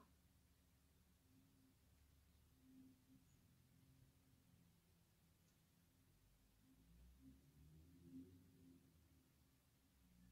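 Near silence: room tone with a faint low hum, and a few slightly louder low bumps near the end.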